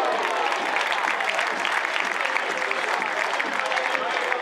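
Football stadium crowd applauding, a dense patter of hand claps, with voices shouting over it.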